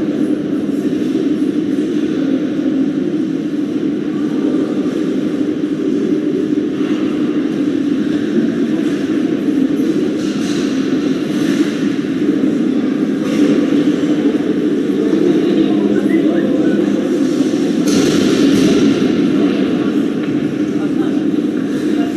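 Ice hockey rink ambience: a steady low hum with indistinct voices, broken by a few hissing scrapes of skate blades on the ice around the middle and near the end.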